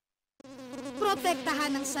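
Mosquito buzzing sound effect for a cartoon mosquito: a steady, whining drone that starts suddenly about half a second in after a brief silence and wavers in pitch as it goes.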